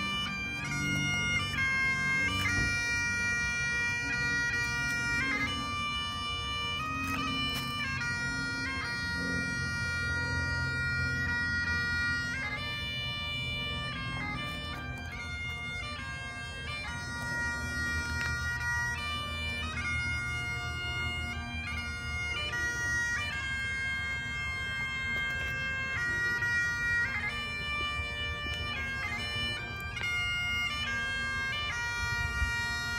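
A 106-year-old set of bagpipes playing a tune: a melody line stepping between notes over the steady drones, with quick grace notes flicking between them.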